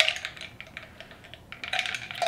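Metal straw stirring ice in a glass mason jar: light, irregular clinks against the glass.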